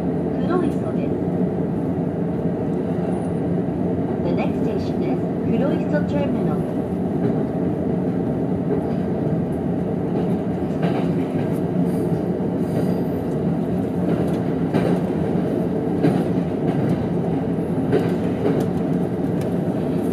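Cabin noise inside a JR East E231 series electric commuter train running at speed: a steady low rumble of the wheels on the rails, with occasional faint clicks.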